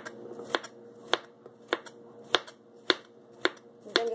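Chef's knife slicing a cucumber on a cutting board: a sharp knock of the blade on the board with each cut, in an even rhythm of about one cut every half second.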